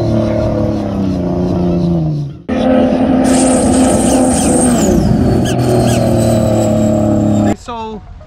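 Two supercharged Sea-Doo jet skis running flat out side by side, their engine pitch sliding down as they pass. A cut about two and a half seconds in gives way to a steady high-speed run, which stops suddenly near the end, where a man's voice begins.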